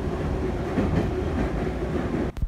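Kyiv Metro train running, heard from inside the carriage: a steady rumble of wheels on rails with a faint steady hum.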